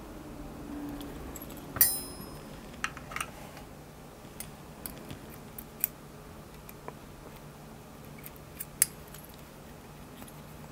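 Small metal clicks and taps from a steel padlock body being taken apart with a screwdriver to free its shackle spring. One sharp, ringing metallic clink comes about two seconds in, then scattered light clicks.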